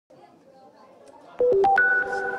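A short electronic jingle opening the news piece: four quick beeping notes about a second and a half in, the last and highest one held and ringing on.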